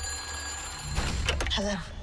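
A sudden high-pitched ringing, several steady tones held for about a second, over a low rumbling drone. A short voice sound follows near the end.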